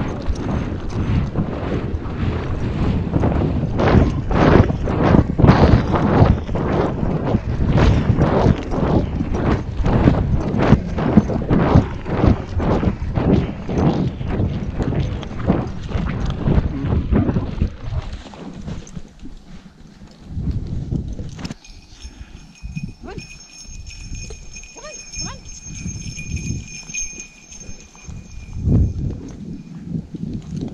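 A horse moving briskly through snow: loud, rhythmic hoofbeats for most of the first two-thirds. It then slows and quietens, with sparser hoof strikes and a steady high-pitched whine in the background over the last stretch.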